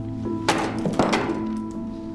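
Two sharp knocks about half a second apart as a metal-headed tool is driven into a plaster wall, heard over steady, sustained background music.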